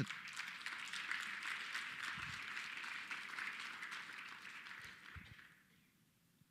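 Audience applause that starts abruptly, holds steady, then dies away about five and a half seconds in, with a couple of soft low thumps partway through.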